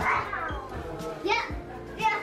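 Young children calling out in high voices as they play, twice, with music in the background.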